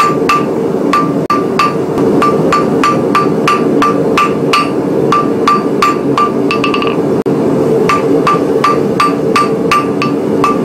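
Hand hammer striking red-hot iron on a steel anvil in a steady rhythm of about three blows a second, each blow ringing brightly.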